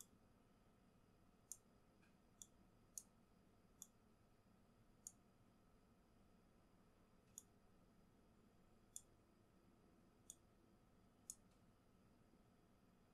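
About ten short, sharp computer mouse button clicks at irregular intervals, over near-silent room tone.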